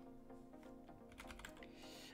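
Faint computer keyboard typing: a few quick keystrokes about a second in, entering a short command.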